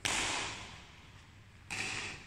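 Badminton rackets striking a shuttlecock during a rally: a sharp, loud hit at the start and a second one near the end, each ringing on briefly in a large hall.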